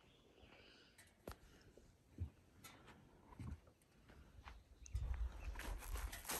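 Near quiet, with a few faint clicks and soft knocks, then a low rumble in the last second or so.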